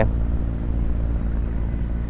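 A motor vehicle engine running with a steady low rumble, even in level.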